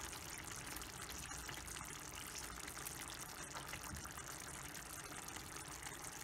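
Thick coconut-milk curry simmering in a stainless steel pan, a faint, steady bubbling with small pops.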